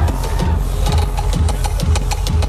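Electronic dance music played loud over a large concert sound system, with a steady four-on-the-floor kick drum at about two beats a second and ticking hi-hats above it.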